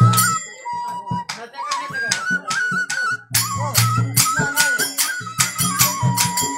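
Dogri pahari folk dance music: a single flute-like melody stepping between a few notes over a steady rhythm of drum and jingling percussion. The deep drum thins out early on and comes back strongly past the middle.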